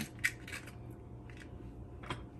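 A few light clicks and scrapes as ripe avocado flesh is scooped from its skin into a plastic bowl with a spoon: two sharp clicks in the first half-second, a fainter one later, over a low steady hum.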